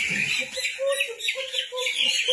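A flock of broiler chickens calling, with many short high chirps overlapping and a run of short lower clucks.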